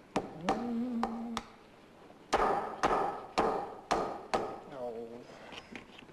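A hammer driving a nail into wood: a few light taps, then five hard blows about half a second apart, ending with the nail bent. A man's voice hums early on and makes a short sound near the end.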